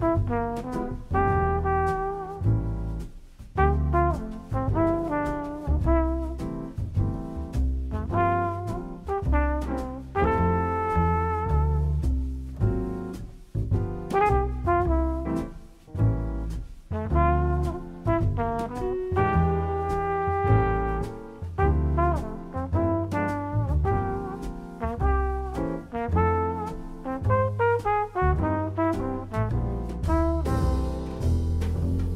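Background instrumental music in a jazzy style: a melody of short pitched notes over a low bass line, playing throughout.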